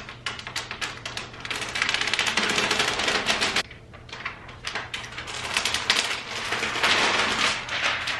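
Clear protective plastic film being peeled off a flat-screen TV and handled, crackling in dense rapid clicks. It comes in two long stretches with a brief lull around the middle.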